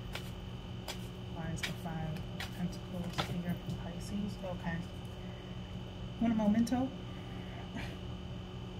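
A tarot deck being shuffled by hand, with sharp clicks of cards now and then, and a woman's low murmuring voice; the loudest moment is a short vocal sound about six seconds in.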